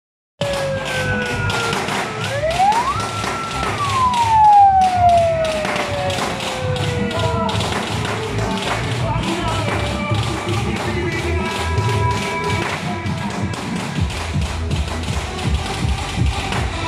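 Loud music blasting from a decorated show car's sound system, with a low bass beat throughout and siren-like swoops that rise and then slowly fall in pitch in the first several seconds.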